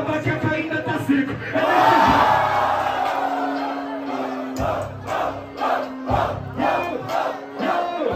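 Crowd cheering and shouting over a hip-hop beat. The shout swells to its loudest about two seconds in, while the bass of the beat drops out. The beat comes back strongly about halfway through with an even pulse.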